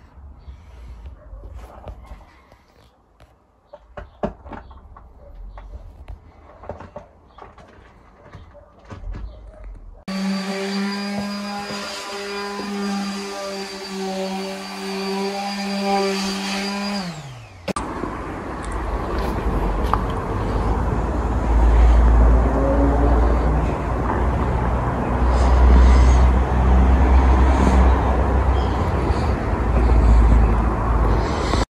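Scattered small knocks and clicks on a workbench. About ten seconds in, a small electric motor starts and runs at a steady pitch for about seven seconds, then winds down. After that, wind rumbles on the microphone outdoors.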